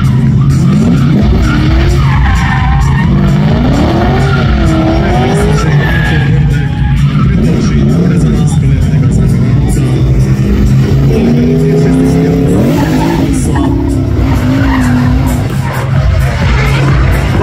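Drift car sliding through a corner with its tyres skidding and its engine revving up and down through the slide, over background music.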